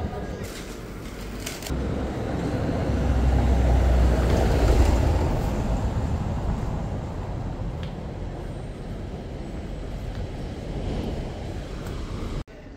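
A motor vehicle passing along the street: a low rumble over traffic noise that swells to a peak about four to five seconds in, then slowly fades.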